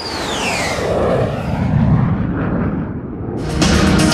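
A whooshing transition sound effect: a swelling rush of noise with a whistle falling in pitch over about the first second, then a low rumble. Music with drums comes in near the end.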